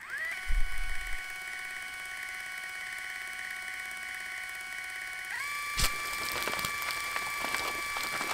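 A steady electronic buzzing tone that slides up in pitch as it starts, with a low thump in the first second. About five seconds in, the tone steps up in pitch, and a sharp click follows shortly after.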